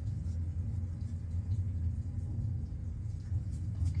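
Steady low background rumble, with a few faint clicks near the end.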